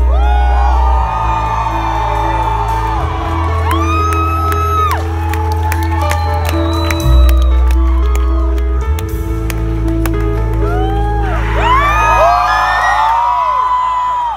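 A live rock band holding long sustained bass and guitar chords that change a few times, with the audience whooping and cheering over them. The whoops swell again near the end.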